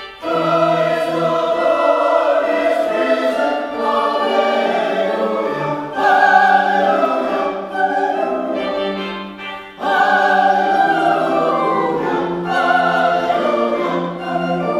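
Mixed church choir singing in parts, entering just after the start and singing in phrases, with short breaks about six and ten seconds in.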